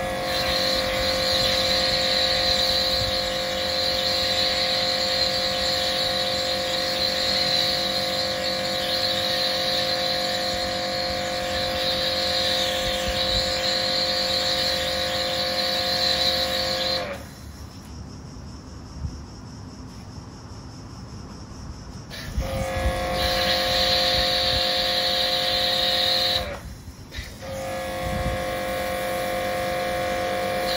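Kärcher K7 pressure washer running with a steady whine, and the hiss of its spray through an MJJC foam cannon on the lance. It stops when the trigger is let go about seventeen seconds in, starts again some five seconds later, and cuts out briefly once more a few seconds before the end.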